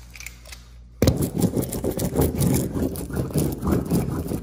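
A three-wheel seam roller with yellow plastic rollers being run over a wallpaper seam to press it flat. Its wheels make a loud, dense clattering and scraping against the textured wallcovering, starting abruptly about a second in.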